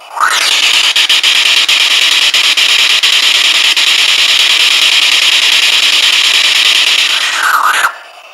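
Spirit box (radio sweep device) scanning through radio frequencies: loud hissing static broken by rapid clicks as it steps from station to station, with a short whistling glide at the start and near the end. It comes in suddenly and cuts off just before the end.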